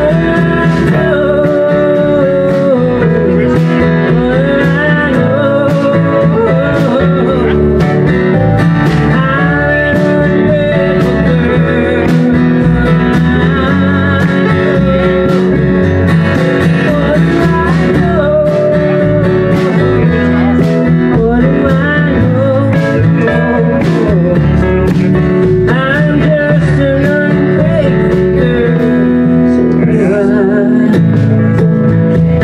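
Live band playing a slow country song: strummed acoustic guitar over drums and keyboard, with a gliding melody line on top.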